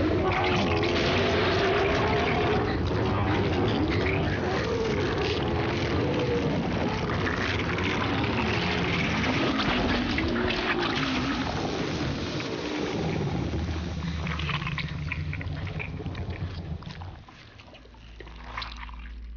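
Film sound effects of a giant toad creature in its death throes: a low, wavering groan over wet, liquid noise, as its body empties and collapses. The groan gives way to the liquid sounds after about ten seconds, and everything fades away near the end.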